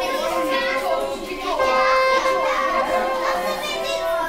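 Many children chattering and calling out at once in a room, over background music with long held notes.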